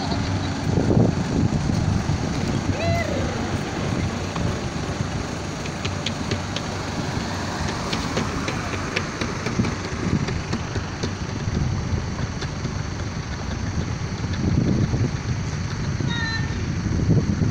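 Roadside noise: a steady rumble of passing traffic with indistinct voices in the background.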